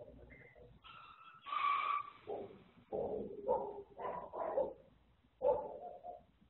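A dog barking: a longer, higher-pitched call about a second and a half in, then a string of short barks.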